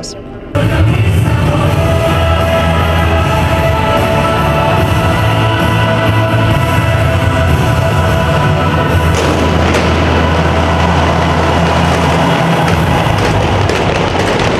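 Loud rock music with electric guitar over a heavy bass, cutting in suddenly about half a second in. A rushing noise joins the music from about nine seconds in.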